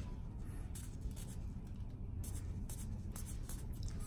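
A blade paring the thick skin of a corn on the little toe: quick, irregular light scraping strokes over a steady low hum.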